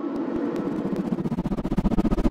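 Logo intro sound effect: a glitchy riser that grows steadily louder, with a rapid stutter of clicks and a deep rumble coming in about a second and a half in.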